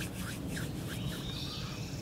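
Woodland ambience: faint birdsong with a high, thin trill starting about halfway through, over light rustling.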